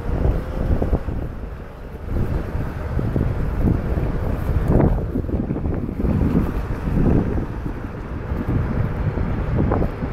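Wind buffeting the camera microphone as it is carried along at riding speed on a Onewheel: a rough, low rumble that swells and fades in gusts.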